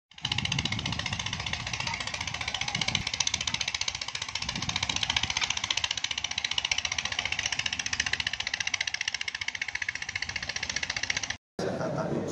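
An engine running steadily with a rapid, even pulse, cutting off abruptly just before the end.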